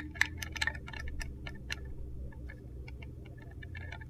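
Light, irregular clicks and taps from a handheld plastic digital luggage scale and its hook being handled close up, over a low steady hum.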